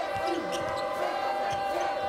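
Basketball being dribbled on a hardwood court: short knocks of the ball hitting the floor, over the steady background noise of a large arena.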